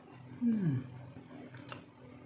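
A short, low vocal sound that falls in pitch, heard once about half a second in.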